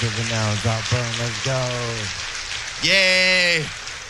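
Applause from a small audience between songs, with a man's voice in short phrases over the PA and a brief loud held call about three seconds in.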